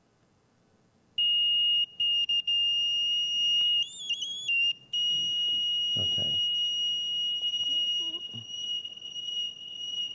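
A small electronic buzzer sounding a steady, shrill, high-pitched tone. It starts about a second in, cuts out briefly a few times, wavers in pitch for a moment near the middle, then holds steady as it is readied for a Doppler-effect swing.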